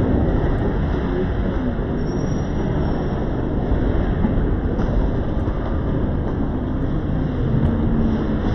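Steady low rumble of a busy bowling alley: balls rolling down the wooden lanes and the alley's machinery running, with no single sharp pin crash standing out.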